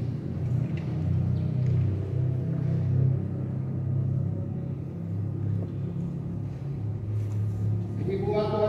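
Church keyboard playing slow, sustained low chords that change every second or two, quieter than the spoken liturgy around them.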